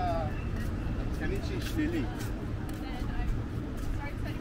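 Passers-by chatting as they walk past, their words indistinct, over a steady low rumble of road traffic.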